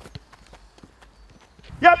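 Faint, irregular footsteps on grass, heard as scattered light taps, then a man shouts "Yep!" near the end.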